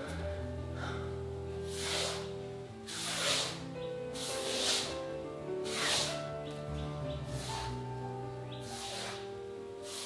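Soft background music with held low notes throughout. Over it, about five short hissing swishes of a paintbrush across a plastered wall: limewash being brushed on.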